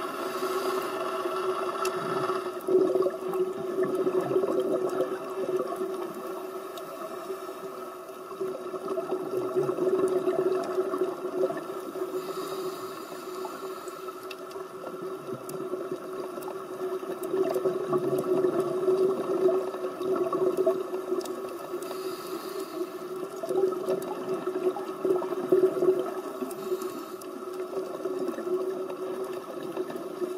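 Muffled underwater sound recorded by a diver's camera in its housing: a steady, dull water rush that swells and fades, with brief hissy swells every several seconds.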